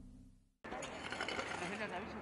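The tail of an intro music sting fades out into a brief silence, then outdoor ambience starts with faint voices talking in the background.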